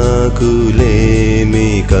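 Telugu Christian devotional song (keerthana) from a studio recording: a voice singing a long drawn-out line over steady instrumental backing, with a drum hit about once a second.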